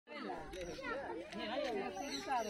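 Several people talking at once: a steady mix of overlapping voices, none of them clear.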